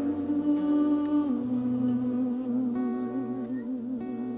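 Slow worship music: a woman's voice holds a long wordless note, steps down a little just over a second in, then carries on with a slow vibrato, over soft guitar and a low bass note.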